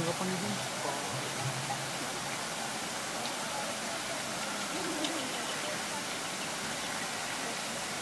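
Steady rushing noise of running water, with brief faint voices over it.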